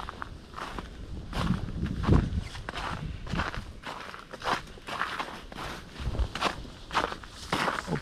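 Footsteps of a person walking through snow on a trampled path, about two steps a second.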